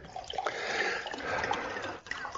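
Water being poured from a glass bottle into a glass beaker, a steady trickle that stops just before the end.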